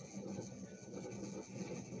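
Quiet room tone: a faint steady hum and hiss, with no distinct event.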